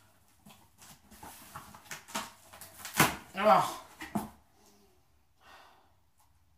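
Cardboard shipping box being pulled open by hand: light crackling and rustling of the cut packing tape and flaps, with one sharp crack about three seconds in.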